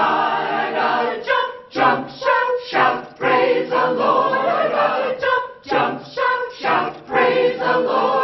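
Mixed church choir of men and women singing together, in short phrases broken by brief gaps.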